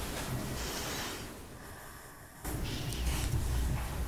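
Low room noise with a hum. It fades quieter through the middle and comes back suddenly about two and a half seconds in.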